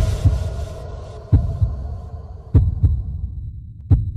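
Heartbeat sound effect: paired low thumps, lub-dub, about every 1.3 seconds, four times over, above a hum that fades away.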